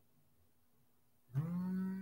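Quiet room tone, then about 1.3 s in a single drawn-out, low-pitched animal cry begins, rising briefly at its start and then holding one steady pitch.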